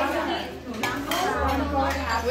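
A few light clinks and knocks, with voices talking in the background.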